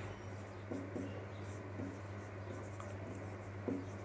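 Marker pen writing on a whiteboard: a few faint, short strokes spread through, over a steady low hum.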